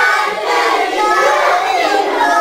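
A group of children calling out and cheering together, many high voices overlapping at once.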